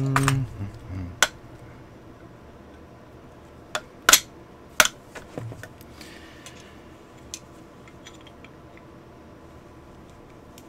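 A strained grunt, then a few sharp metallic clinks, the loudest about four and five seconds in, as a muzzle brake is wrenched off a Springfield M1A SOCOM-II rifle barrel with an aluminum muzzle-brake tool.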